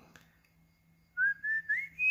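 A person whistling a few short notes that step upward in pitch, starting about a second in after a near-silent pause, over a faint low hum.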